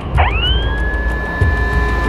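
Blast warning siren sounding: it rises quickly in pitch and then holds one steady tone, marking the start of the one-minute countdown to the explosive demolition.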